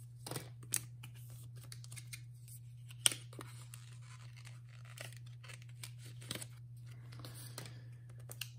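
Photocards being slid into plastic binder pocket sleeves and handled: soft scratchy rustling of card against plastic, with a few sharp clicks, the loudest about three seconds in.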